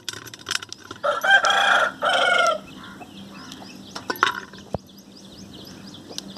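A rooster crowing once about a second in, a loud drawn-out call in two parts. Faint sharp snaps of cluster beans being broken by hand come before and after it.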